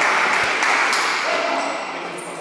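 Players shouting and cheering just after a futsal goal, echoing in an indoor sports hall and fading away, with one sharp thud about half a second in.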